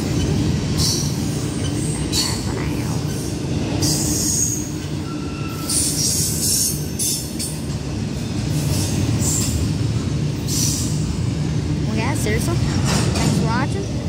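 Norfolk Southern double-stack intermodal freight train rolling past: a steady low rumble of wheels on rail, broken every second or two by brief high screeches from the wheels.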